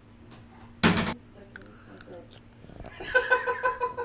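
A young child's voice making a wordless, wavering vocal noise near the end, pulsing rapidly on one pitch. About a second in there is a short, loud breathy burst.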